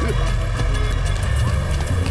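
Background film music with a steady, pulsing low bass beat.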